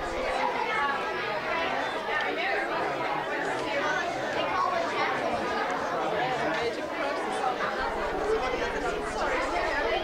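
A group of children and adults chattering at once, many voices overlapping into a steady babble with no single clear speaker.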